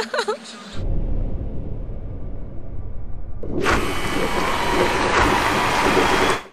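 A woman's brief laugh, then a low rumble from about a second in, joined about three and a half seconds in by a loud, even rushing noise: the sound effects of an animated closing sequence.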